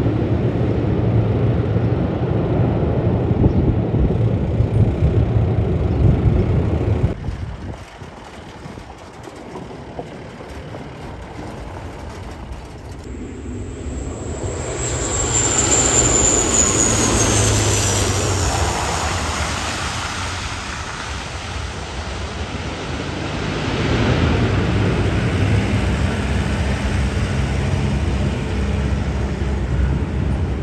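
Turboprop airliners: an ATR 72-500 running on the runway after landing, cut off suddenly about a quarter of the way in. Then a Bombardier Dash 8 Q400 approaching to land, swelling in level with a high whine that falls in pitch as it passes close, followed by its engines running loud again on the runway near the end.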